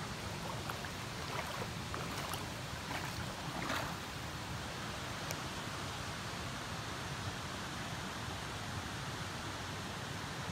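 Creek water running over rocks: a steady, even rushing, with a few faint ticks in the first few seconds.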